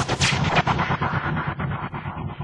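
Logo-intro sound effect: a blast-like burst of rapid crackling impacts that starts suddenly and fades away, losing its brightness as it dies down.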